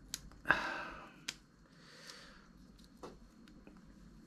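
Faint, sparse metallic clicks from a Gerber folding multi-tool being handled as its tools are turned and unfolded. A short breath comes about half a second in, and a soft breath about two seconds in.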